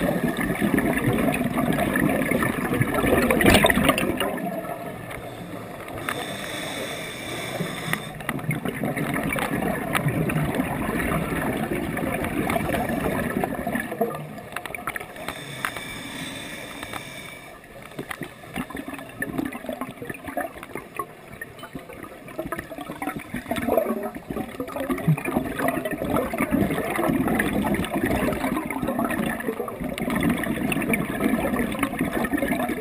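Scuba regulator breathing recorded underwater through a camera housing. There are a few slow breath cycles, each a short hiss of inhaling followed by a long bubbling exhale.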